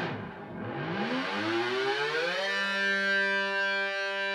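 Distorted electric guitar (an EVH Wolfgang through an EVH amp's gain channel) playing a whammy-bar dive bomb on the open G string. The note starts at the bottom of the dive and slides back up to pitch over about two seconds as the tremolo bar is let back. It then sustains steadily at pitch.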